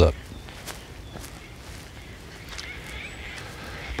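Quiet outdoor ambience in eucalyptus bush during a pause in speech: a low steady background with a few faint soft clicks.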